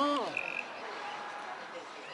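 A man's drawn-out whoop that rises and falls in pitch at the very start, the second of a pair, from a drunk diner carousing inside. A brief high ring follows, then a faint murmur of background voices.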